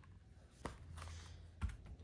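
Small cardboard product boxes handled by hand: two light clicks of box against box, about a third of the way in and near the end, with faint rustling between.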